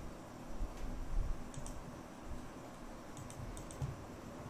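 Light clicks at a computer desk: a single click about a second and a half in, then a quick run of four or five clicks near the end, over a faint room hum.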